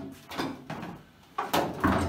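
A hand abrasive pad scrubbed across a bare steel car door panel in several short strokes, the loudest near the end with a low knock of the panel.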